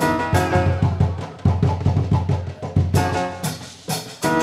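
Live band playing a maloya-based fusion groove: hand drums and drum kit beat a fast run of low strokes through the middle, with guitar and keyboard chords ringing at the start and again about three seconds in.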